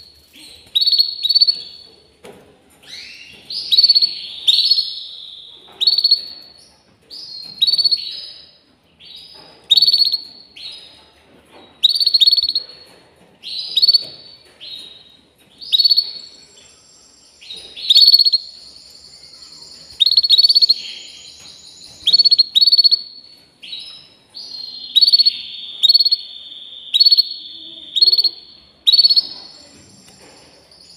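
Canary singing: short, loud, high chirped notes that fall in pitch, repeated about once a second, with a longer held trill a little past halfway.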